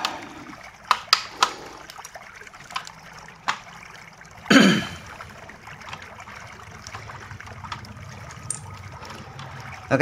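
A few light clicks and taps from hands handling the plastic case of an Asus X441B laptop, with a short vocal sound, falling in pitch, about halfway through.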